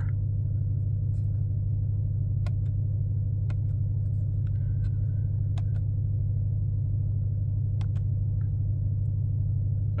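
Ram TRX's supercharged 6.2-litre Hemi V8 idling in park, a steady low drone heard from inside the cab. A few faint, sharp clicks from buttons being pressed to enter the PIN sequence.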